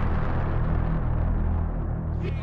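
Background music: a dark, droning soundtrack of steady low tones, its higher sounds fading away toward the end.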